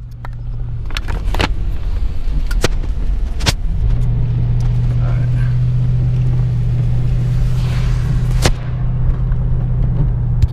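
Inside a car climbing a wet mountain road: the engine and tyres on wet pavement make a steady low drone that grows stronger about four seconds in. In the first few seconds, sharp knocks and clicks come from the camera being handled back onto its mount, and one more click comes near the end.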